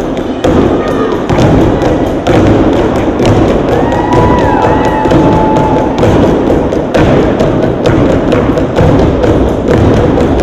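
Rhythmic stomping and machete strikes from a step team's machete dance, a dense run of sharp thuds and taps over music.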